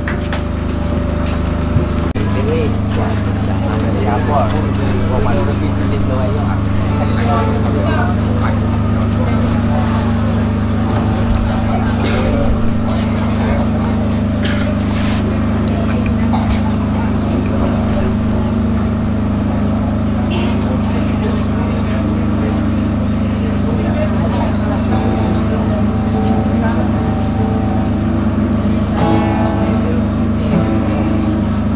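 A group of young women singing a hymn together over instrumental accompaniment that holds steady low notes.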